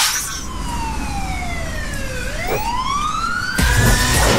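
A siren-like wail: one pitched tone that falls for about two seconds, then rises and starts to fall again, over a low rumble. Music with a heavy beat cuts back in near the end.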